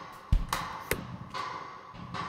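Drum loop playing with reverb on it: a few drum hits, one with a low kick about a third of a second in and a sharp hit near one second, each trailing off into a reverb wash.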